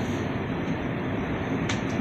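Steady background noise, an even hiss with a low hum, picked up in a pause with no speech.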